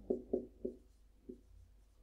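Marker writing on a whiteboard: three short strokes close together in the first second, then one more a little later.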